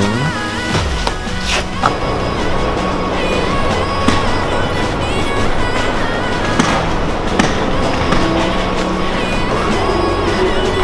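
A continuous rough rumbling and rattling, like something rolling over a hard surface, with a few sharp knocks, over background music.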